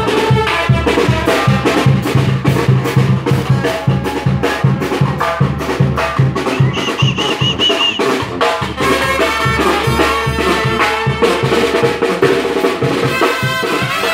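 A Mexican brass band playing live: a tuba and trumpets over a steady drum beat, with a brief high trilled note about seven seconds in.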